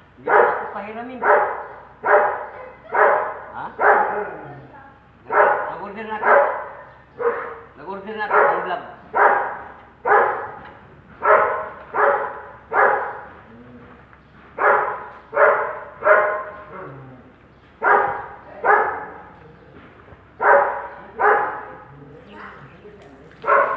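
A dog barking repeatedly, in runs of two to four sharp barks about two a second, with short pauses between runs.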